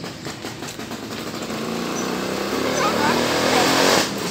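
A motor vehicle engine, such as a passing motorcycle, growing steadily louder as it approaches, loudest near the end.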